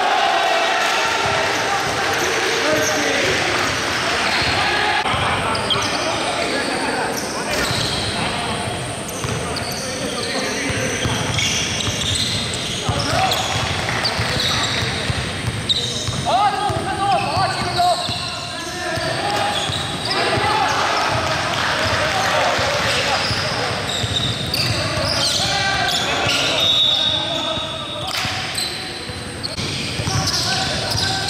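Pickup basketball game: a ball dribbling on a hardwood gym floor, with players' voices calling out and echoing in the large hall.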